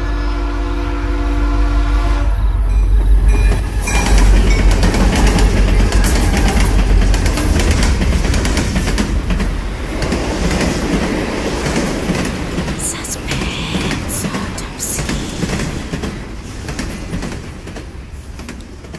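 Railway sound effect: a train horn sounds for the first couple of seconds, then a train runs past with a loud rumble and wheels clattering on the rails, slowly fading away.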